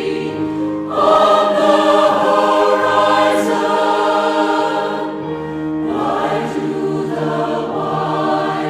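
Mixed choir of men's and women's voices singing long sustained chords in harmony. About a second in the higher voices come in and the sound grows louder and fuller; it thins around five seconds in, then fills out again.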